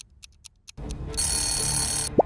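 Quiz countdown-timer sound effect: a few quick clock-like ticks, then, just under a second in, a louder steady ringing like an alarm clock going off.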